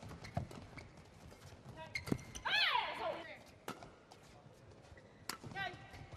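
Badminton rally sounds on a court mat: sharp cracks of rackets striking the shuttlecock, the clearest a little past halfway and about five seconds in, with short shoe squeaks near the end. A long, falling high-pitched squeal sounds about two and a half seconds in.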